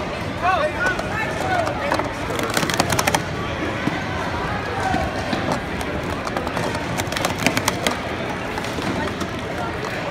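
Plastic sport-stacking cups clacking in quick runs of clicks, about two and a half and seven seconds in, as stackers race through a timed relay. People's voices shout and talk throughout.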